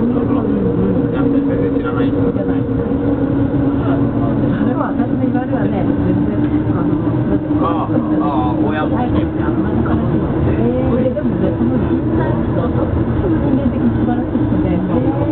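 Tobu Line commuter train running through a subway tunnel: a steady rumble of the running train with a steady hum under it. A higher tone in the hum fades out a few seconds in.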